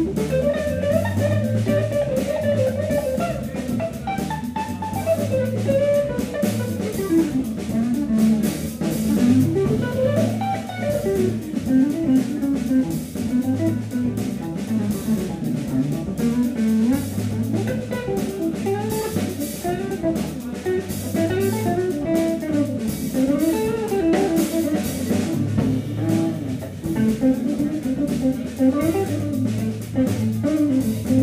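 Live organ trio playing an instrumental jazz groove: a hollow-body electric guitar playing melodic lines over a Hammond organ and a drum kit.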